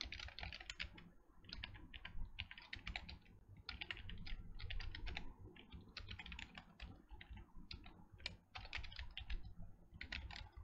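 Fast typing on a computer keyboard: runs of keystrokes with short pauses between them.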